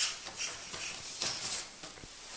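Nylon fabric of a pop-up play tunnel rustling in a few short brushes as a baby crawls through it on hands and knees, the loudest about a second and a half in.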